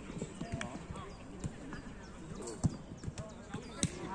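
Football players' running footsteps and ball kicks on artificial turf: a scatter of short thuds and knocks, the sharpest about two and a half seconds in and again near the end.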